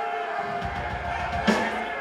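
A metal band's amplified stage gear between songs: guitar amps holding steady feedback tones over a low rumble, then a single sharp hit about one and a half seconds in, followed by a held low note.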